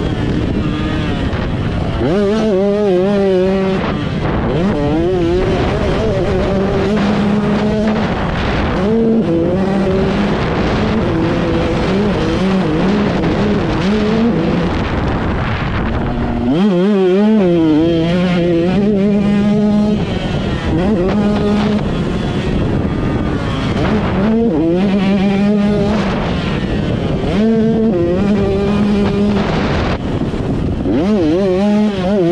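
KTM 125SX two-stroke motocross engine held near wide open for a whole lap, its pitch climbing and dropping again and again through the gears, jumps and corners. It is heard from the rider's helmet camera, with a rush of noise under the engine.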